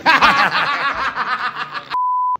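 Two men laughing hard together, a rapid, choppy laugh that cuts off abruptly just before the end.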